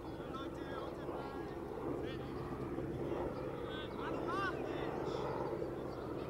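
Open-air ambience: birds chirping in quick repeated calls over a low steady drone, with faint distant voices.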